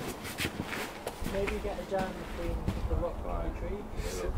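People talking in a group, the words indistinct, with a low rumble underneath in the second half.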